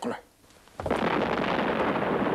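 Explosion, starting suddenly a little under a second in and running on as a loud, steady rushing rumble.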